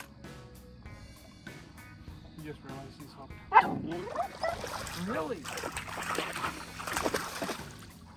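A dog splashes into shallow river water about halfway in, then keeps splashing, with a few short cries over it. Background music plays underneath.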